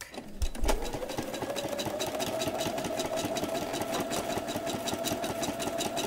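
Electric sewing machine starting up about half a second in, its motor whine rising briefly in pitch and then holding steady as it stitches a seam at constant speed, with a fast, even ticking of the needle.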